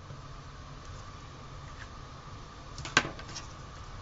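A sharp click about three seconds in, with a few lighter ticks around it: a teal plastic Cricut craft tool being set down on the tabletop. A faint steady hum runs underneath.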